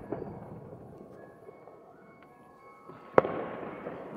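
Fireworks and firecrackers going off across a town at night: a continuous distant crackle, then one sharp loud bang about three seconds in, with a trailing echo.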